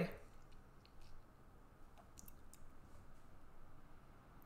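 A few faint, scattered computer mouse clicks over quiet room tone.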